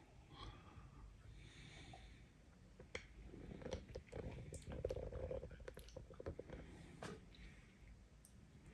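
Faint mouth and breathing sounds of a person tasting a sip of red wine, with a few small clicks.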